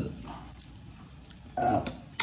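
A single short burp from a person, about one and a half seconds in.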